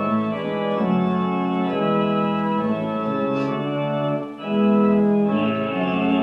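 Organ playing sustained hymn chords that change every second or so, with a brief break between phrases about four seconds in.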